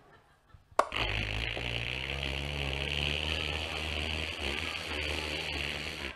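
A steady mechanical whirring with a low hum beneath it. It starts with a click about a second in and cuts off near the end.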